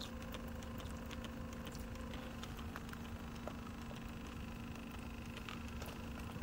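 Faint clicks and spritzes of a hand trigger spray bottle squirting soapy water onto gas pipe fittings and the test gauge, a soap-bubble leak check on a pressurized gas line, over a steady low hum.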